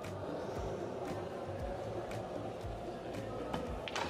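Background music and crowd murmur at a pool table, steady throughout. Near the end, sharp clicks of the cue striking the cue ball.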